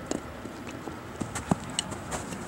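Footsteps and light taps on an artificial-turf field, coming as a handful of short, irregular clicks.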